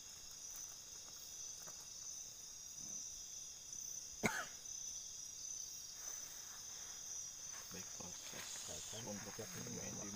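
Faint, steady chirring of night insects, with one short sharp sound about four seconds in and low voices murmuring near the end.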